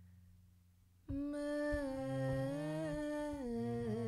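After about a second of near silence, a harmonium plays a slow phrase of held notes that step up and down, with a voice humming along on the same notes.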